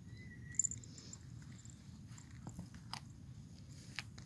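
A few sharp clicks from a handheld training clicker, the loudest about half a second in and two fainter ones near the end, as a Bengal kitten chews food treats, over a steady low background rumble.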